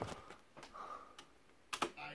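A few faint clicks and taps at a computer desk, a quick pair near the end the loudest.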